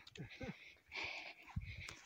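Faint breaths, two short airy puffs about a second apart, with a brief low murmur of a person's voice near the start.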